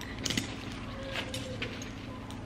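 Light metallic clicks and clinks of a diaper bag strap's metal clips and D-ring hardware as the strap is handled and hooked on, a few separate clicks over a steady low hum.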